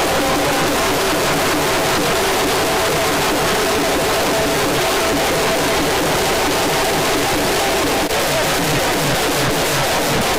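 Loud, dense festival drumming and band music played for Holi street dancing, the beats coming thick and steady without a break.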